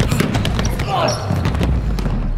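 A basketball bouncing several times on a hardwood gym floor during a game, with players' voices.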